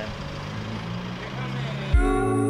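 Outdoor street ambience: a steady background noise with faint voices of people nearby.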